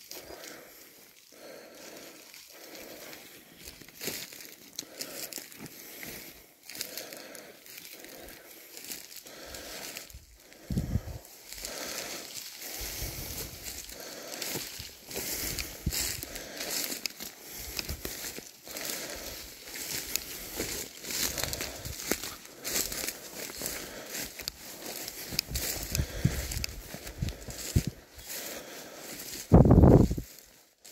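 Footsteps pushing through dry, dead bracken: steady irregular crackling and crunching of brittle stems and leaves, with a brief louder rumble near the end.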